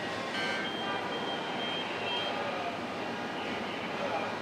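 Car assembly plant ambience: a steady wash of machinery and floor noise, with a thin high tone sounding from about half a second in for under two seconds.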